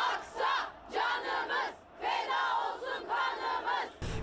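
A crowd of women chanting a protest slogan in unison, shouted in short rhythmic phrases with a brief break about two seconds in.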